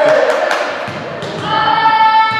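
A group of girls' voices chanting in unison in a large echoing hall, settling into one long held note in the second half, with a couple of sharp knocks in between.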